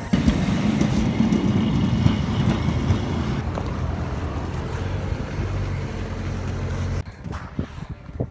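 Low rumble of passing traffic, loudest in the first few seconds, then settling into a steady low hum that cuts off abruptly about seven seconds in.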